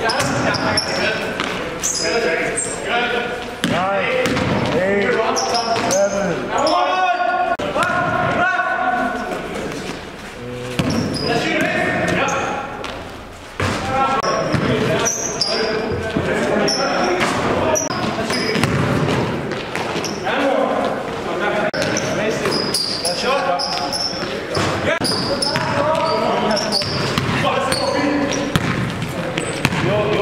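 Live game sound in a basketball gym: a ball bouncing on the court, sneakers squeaking, and players' voices echoing in the hall.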